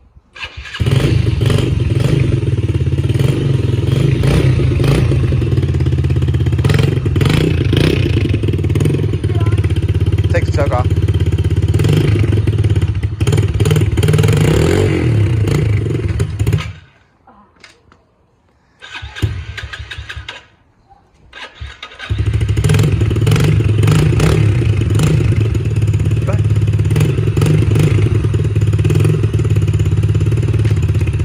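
Yamaha TT-R110 pit bike's small four-stroke single-cylinder engine starting about a second in, on choke from cold, then running steadily at idle. Just past halfway it falls away for about five seconds, with one short burst of sound in the gap, and then runs steadily again.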